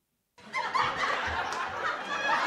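Sitcom laugh track: canned audience laughter that comes in after a brief silence, about half a second in, and holds steady.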